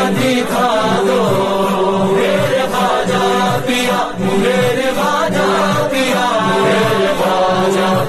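Devotional Urdu song (a manqabat) in praise of Khwaja Moinuddin Chishti of Ajmer: a wavering, ornamented melody continues between sung lines over a steady drone.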